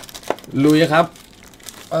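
Foil trading-card packs crinkling as a hand grabs them and pulls them out of the box, a run of quick crackles.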